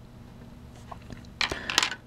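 Faint steady electrical hum, then a short cluster of clicks and rustles about a second and a half in, as the camera or circuit is handled.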